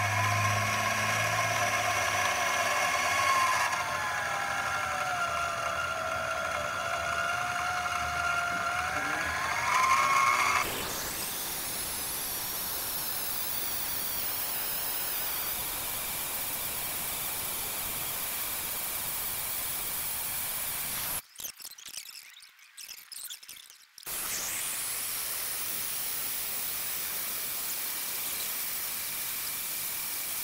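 Bauer portable bandsaw running as a horizontal bandsaw, its blade cutting through a solid round 6061 aluminum billet. For the first third the motor's pitch sags and recovers; the sound then settles into a steady hiss, with a brief drop-out about two-thirds through.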